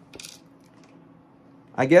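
A single brief, light clink about a quarter-second in, then quiet room tone.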